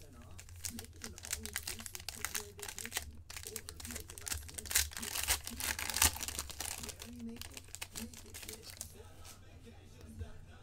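Crinkling and tearing of a hockey card pack's plastic wrapper as it is ripped open by hand, in a dense run of crackles that is loudest about five to six seconds in. A steady low hum lies underneath.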